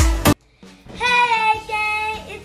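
Electronic dance music with a heavy drum beat cuts off abruptly about a third of a second in; after a short silence a young girl sings a long held note from about a second in.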